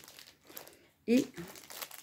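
Plastic film wrapping of paper-napkin packets crinkling faintly as the packets are handled.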